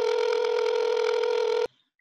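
Call ringing tone: one steady, buzzy electronic tone held for about a second and a half, then cut off suddenly as the call is answered.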